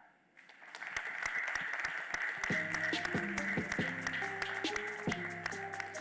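Audience applauding, a steady clatter of claps that builds up in the first second. Music with plucked-sounding notes comes in under the applause about two and a half seconds in.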